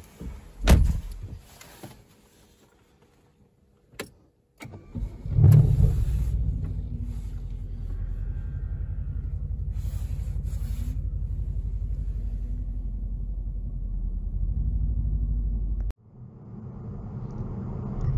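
A knock less than a second in, then the 2015 Mercedes-AMG C63 S's twin-turbo V8 starting about four and a half seconds in: the revs flare briefly, then it settles into a steady idle. It is a cold start at −8 °C. Near the end the sound cuts to the steady road noise of the car driving.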